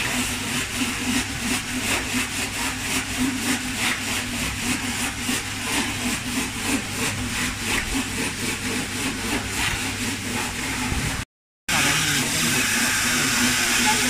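Rotary die cutting machine running steadily as it cuts double-sided tape, with a low hum and a fast, even clicking from its gear-driven rollers. The sound cuts out for a moment about eleven seconds in, then the machine is heard running again.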